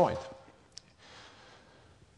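The end of a spoken word, then a single short click about three-quarters of a second in, followed by faint room tone with a soft hiss.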